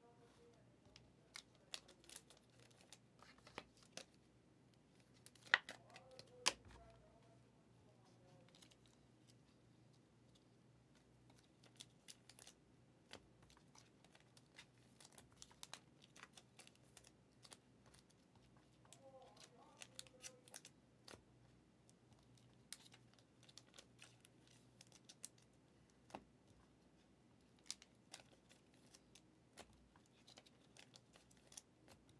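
Trading cards and card packs being handled on a table: quiet, with scattered faint clicks and taps, and two sharper clicks about five and six and a half seconds in.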